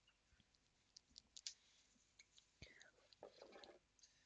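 Near silence, with a few faint clicks and light taps from nail-stamping tools being handled and set down on the table.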